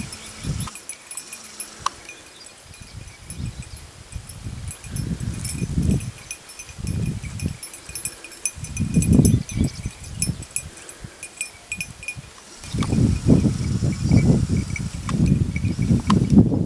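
Small bells jingling and tinkling unevenly, fading out about three-quarters of the way through. Wind gusts buffet the microphone with a low rumble, and these grow louder and more constant near the end.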